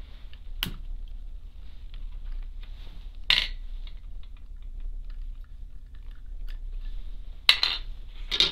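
Small, light clicks and scrapes of a slim metal pick working the wheelsets out of a model locomotive's tender, with a few sharper clicks: about a second in, a little over three seconds in, and near the end.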